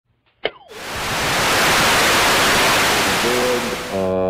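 Old console television switching on: a sharp click with a short falling tone, then a loud, steady static hiss. Near the end the hiss thins as the broadcast's sound comes through.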